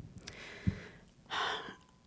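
Breaths close to a handheld microphone, with a short low thump about two-thirds of a second in as the mic is handled, then a louder breath.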